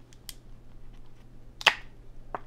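Trading cards being handled in clear plastic packaging: faint rustles and small clicks, with one sharp plastic snap about two-thirds of the way through.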